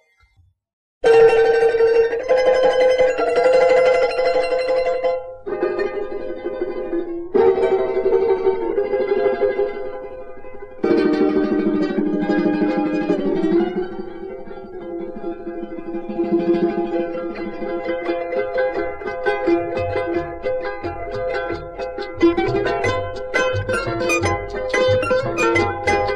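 Three charangos, soprano, tenor and baritone, playing a huayño together. The strummed chords start about a second in, the first phrases break off in short pauses, and then the playing runs on with quick plucked notes over the chords.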